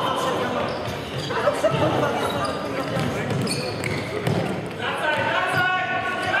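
Indoor futsal play in an echoing sports hall: players shouting to each other over the thuds of the ball being kicked and bouncing on the wooden floor.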